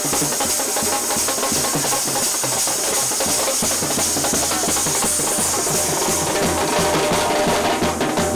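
Indian wedding brass band (band baaja) playing in a baraat procession: drums, including a bass drum, keep a steady beat under brass horns.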